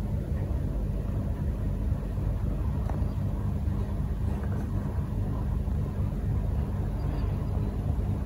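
Steady low rumble and hum with no distinct events.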